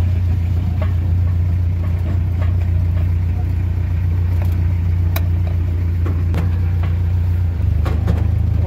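Swaraj 855 tractor's diesel engine running steadily at low speed, a deep even drone with a few light rattles and clicks. Its note shifts slightly near the end.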